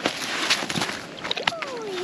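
Crackling rustle of a monofilament cast net and the fish in it being handled on sand. A short falling call comes near the end.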